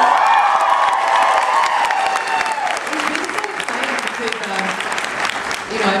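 Audience applauding: many hands clapping.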